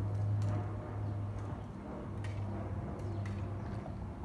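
A steady low mechanical hum, like a motor running, with a few faint knocks over it.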